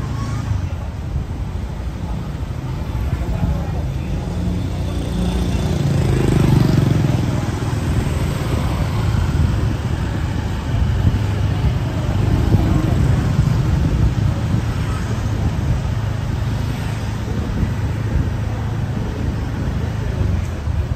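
Motorbike and car traffic on a narrow city street: a steady low engine hum that swells as vehicles pass, about six seconds in and again around twelve seconds.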